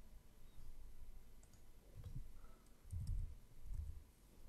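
Faint computer mouse clicks and keyboard key presses, with a few soft low thumps in the second half.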